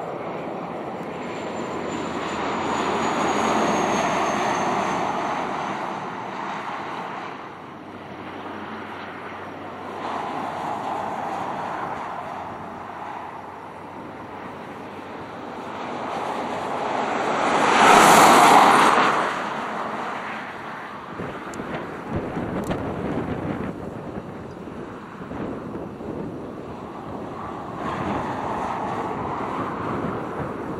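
Wind rushing over the microphone together with the running noise of a moving car. The sound rises and falls in several swells, and the loudest comes about 18 seconds in.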